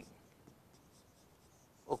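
Marker pen writing a word on a whiteboard, faint.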